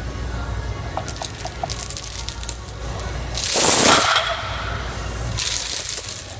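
Steel chains hung from a loaded barbell clinking and rattling as the bar is lifted. A few light clinks come first, then two loud rattles, one about three seconds in and one near the end.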